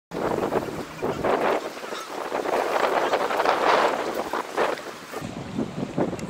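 Wind buffeting the microphone in gusts, a rushing noise that swells and fades about once a second.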